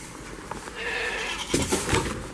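A goat bleating briefly about a second in, followed by a quick cluster of loud knocks near the end.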